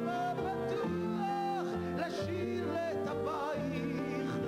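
Live pop song performance: a male voice singing in Hebrew over a small band with flute and acoustic guitar, with a steady bass and chords under a wavering melody.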